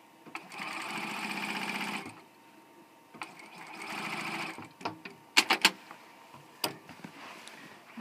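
Juki J-150 QVP sewing machine stitching a binding seam in two short runs of about a second and a half each, with a pause between them, followed by a few sharp clicks.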